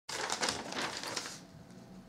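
Crackling, rustling noise with quick clicks for about a second and a half, then fading to quiet room tone.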